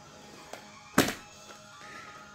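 A stack of plastic CD jewel cases handled and pushed across the floor: a soft knock, then one sharp clack about a second in. Faint music plays underneath.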